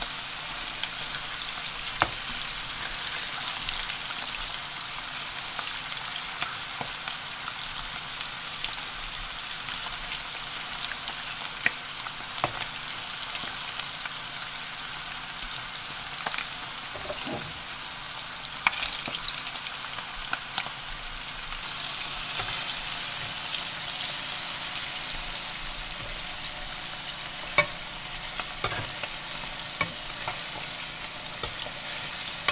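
Pieces of dried cutlassfish deep-frying in hot oil, about 180 °C, in a wok: a steady crackling sizzle, with a few sharp clicks scattered through. The fish is still cooking, not yet done.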